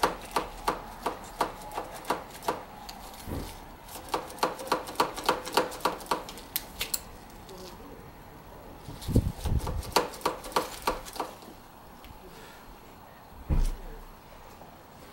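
Rapid light clicking, about three to four clicks a second in three bursts, from the brake lever of a Brembo RCS master cylinder being pumped to bleed it. A few dull thumps come near the middle and near the end.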